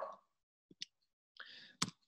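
Faint clicks in a pause in speech: two small ones a little under a second in, then a soft brief noise and a sharper click just before speech resumes.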